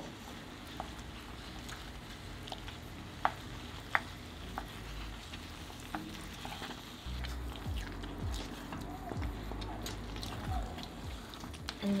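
A wooden spatula stirs and breaks up soft tofu in a pan of hot, bubbling mapo sauce. A low sizzle runs under scattered clicks of the spatula against the pan, with two sharp knocks about three and four seconds in. The stirring gets louder and busier from about seven seconds.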